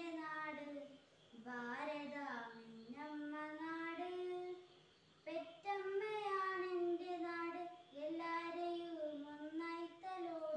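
A young girl singing solo and unaccompanied, in long held phrases with short breaths between them.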